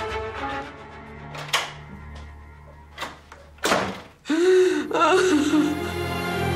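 Sad background music with a woman sobbing over it: a few sharp, gasping breaths, then a loud wailing cry about four seconds in.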